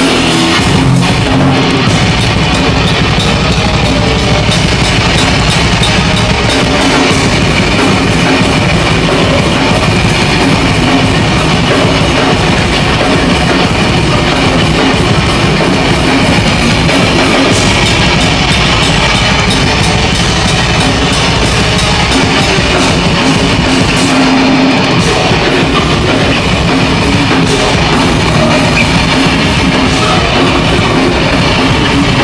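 A live heavy rock band plays at full volume, with distorted electric guitars and a pounding drum kit. The sound is loud and dense, with no break.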